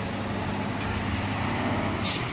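Dump truck engine running as it drives past in street traffic: a steady low engine hum over traffic noise.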